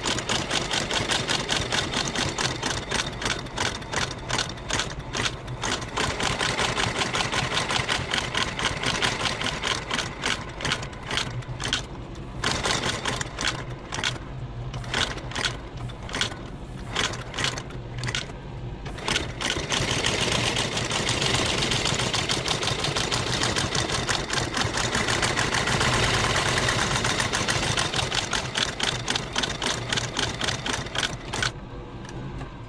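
Outsole stitching machine running with a rapid, rhythmic clatter of stitches over a steady motor hum as it lockstitches a leather sole to a boot's welt, its blade cutting a closed channel at the same time. It stops and starts in short spells through the middle, then runs steadily near the end.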